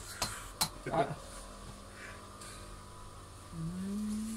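Two light clicks, then a short vocal sound about a second in. Near the end a man's voice holds a drawn-out hummed note over quiet room tone.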